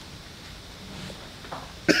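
Quiet room tone, then a man coughs once, sudden and loud, near the end.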